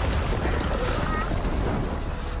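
Animated fight sound effects: a loud, steady low rumble with a rushing noise, the sound of a huge energy blast.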